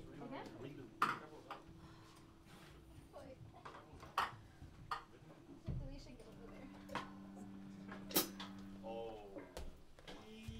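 Quiet band-room bustle before a song: scattered sharp clicks and taps of instruments and gear being handled, over a faint steady held tone from an amplified instrument that drops to a lower pair of tones about six seconds in, with soft murmured talk.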